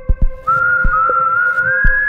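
Eerie whistled melody in a horror-style title soundtrack. One held note jumps up about half a second in, then climbs slowly higher. Under it are low, heartbeat-like thumps, some in close pairs.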